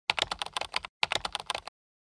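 Keyboard typing sound effect: rapid key clicks in two runs of under a second each, with a short break between, ending abruptly.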